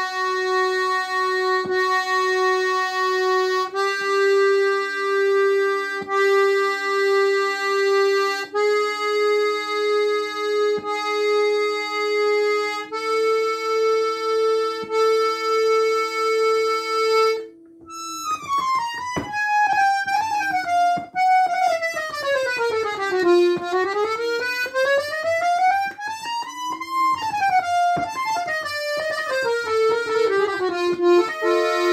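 Excelsior accordion's reeds sounding single held notes one at a time, each about four seconds long and stepping up a semitone, with a steady pulse about twice a second, as in a tuning check. After a brief break, a fast run of notes sweeps down and back up the keyboard.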